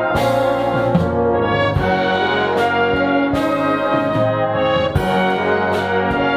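A British-style brass band of cornets, horns, trombones, euphoniums and tubas playing full, sustained chords, with percussion strokes marking the beat: one at the start, one about a second in, and one about five seconds in.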